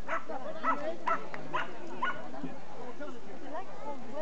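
A dog barking, about five short, sharp barks in the first two seconds, over a crowd talking.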